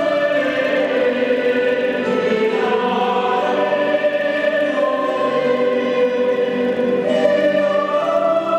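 Mixed choir of men's and women's voices singing baroque-era vocal music in held chords, the harmony shifting about two seconds in and again near the end.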